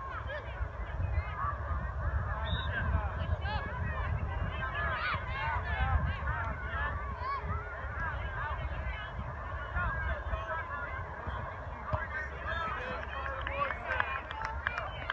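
A flock of geese honking: many short calls overlapping without a break, over a low steady rumble.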